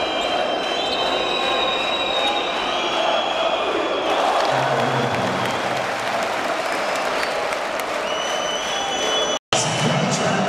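Crowd noise filling an indoor basketball arena during play, with long high steady tones sounding over it. The sound drops out for a split second near the end.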